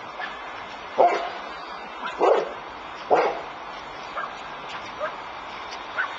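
A Newfoundland dog barking: three loud barks about a second apart, then a couple of fainter sounds.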